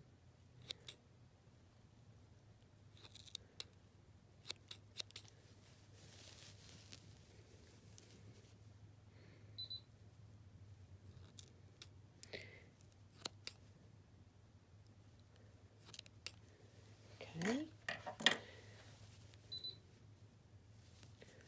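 Small scissors snipping yarn: scattered faint, sharp snips, some in quick pairs, as waste yarn is cut away from a machine-knit piece.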